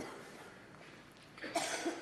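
A quiet pause of room tone, then about a second and a half in a short breathy burst from a man at the microphone.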